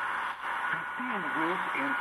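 Announcer's voice reading a weather forecast, received on a portable shortwave radio and heard through its small speaker under a steady hiss of static and a faint steady whistle: weak, noisy shortwave reception.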